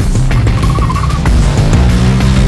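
Intro music with a motorcycle engine sound mixed over it; a short wavering high tone runs through the first half.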